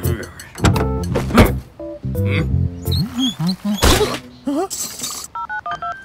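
Cartoon soundtrack: background music with a few sharp sound-effect hits and a character's wordless vocal sounds that slide up and down in pitch.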